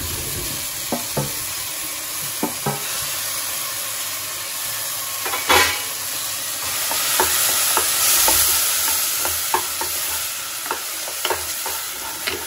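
Mashed eggplant and tomato frying in a non-stick pot with a steady sizzle, stirred with a wooden spatula that clicks and scrapes against the pot now and then. There is one louder knock about five and a half seconds in.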